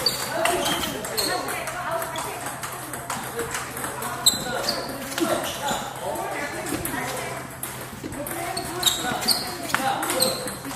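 Table tennis ball struck back and forth with paddles in a forehand drill, giving sharp clicks of ball on paddle and table, over people talking throughout.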